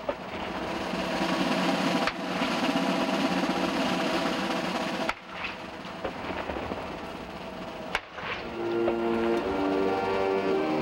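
Ceremonial field guns firing a gun salute: sharp shots roughly every three seconds, each followed by a rolling rumble. Band music with held brass-like chords comes in near the end.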